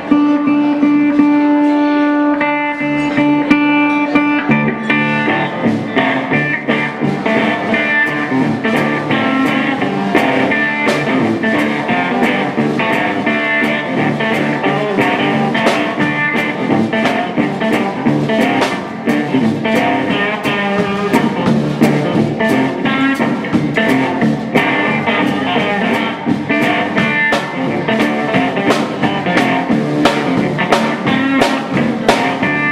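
Live blues from an electric guitar and a drum kit. A held guitar note rings for the first few seconds, then the drums come in at about five seconds with a steady beat under the guitar.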